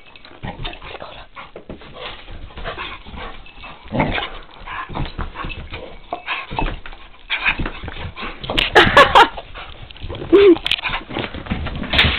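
A vizsla and another dog playing rough together over tennis balls, with scuffling and short dog vocal noises. The loudest burst comes about nine seconds in, and a brief whine follows about a second later.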